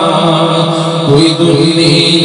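A man reciting a naat in a melodic, chant-like voice through a handheld microphone, holding a long sung note that moves to a new pitch about a second in.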